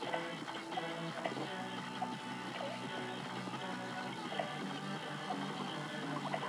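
Background music from a television commercial playing in the room, steady at a moderate level.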